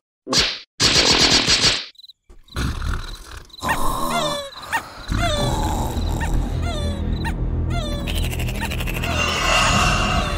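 Cartoon sound: a few sharp hit effects and a loud, second-long screaming cry from the frightened larva characters. Then a tense night ambience of repeated short falling chirps over a steady low rumble.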